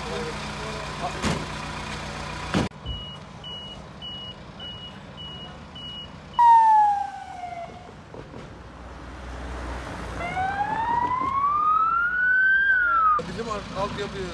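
Ambulance siren wailing as it pulls away: a loud falling tone about six seconds in, then a long slow rising sweep that cuts off near the end. Before it come a run of short high beeps, and at the start the bustle of voices around the ambulance.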